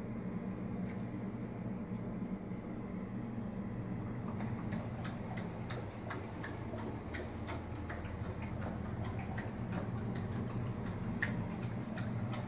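A steady low mechanical hum with irregular light ticks and clicks over it. The clicks come more often in the second half.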